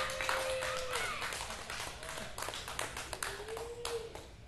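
Sparse clapping and voices from a small club audience as a rock song ends, with a held note that stops about a second in.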